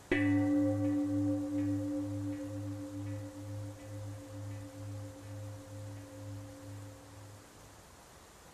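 A single struck meditation bell rings out and fades away over about seven seconds, its tone pulsing about twice a second. It is the cue to return to neutral.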